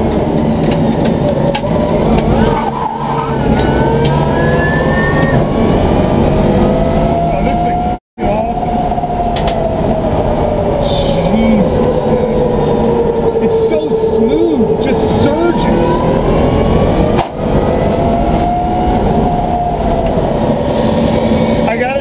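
Twin 11-inch Warp electric motors of an electric BMW M3 race car whining on the move, the pitch rising and falling slowly with speed, over road and tyre noise. The sound cuts out briefly about eight seconds in.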